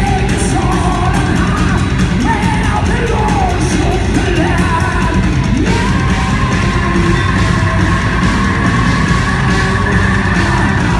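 Live heavy metal band playing: a male lead vocal sings a bending melodic line, then holds one long high note from a little past halfway, over bass guitar, electric guitar and rapid drums.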